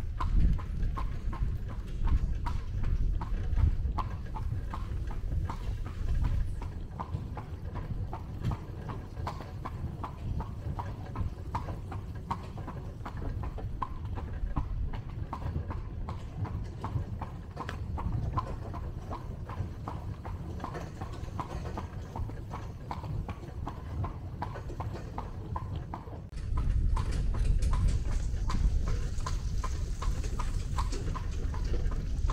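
Carriage horse's hooves clip-clopping on a hard road at a steady walking rhythm, over a low rumble that grows louder for the last few seconds.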